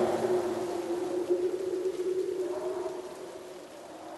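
A low, sustained note from a dramatic background score, held steady and slowly fading away, with a brief wavering higher tone about two and a half seconds in.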